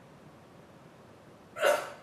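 One brief, loud vocal burst from a person, like a hiccup or short cough, about a second and a half in, over a low steady background.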